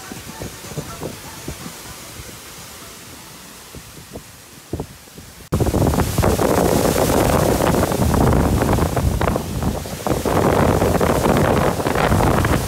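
Strong gusty wind in trees buffeting the microphone during a storm. It is low and rumbling at first, then cuts in suddenly much louder about halfway through and stays loud.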